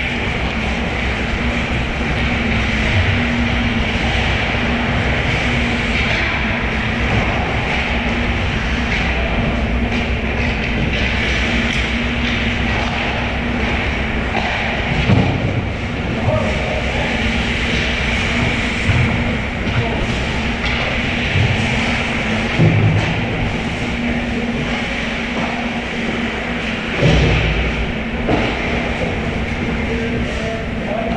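Ice hockey in play on an indoor rink: a steady rumble of skating and rink noise over a constant low hum, with a few short thuds from the play in the second half.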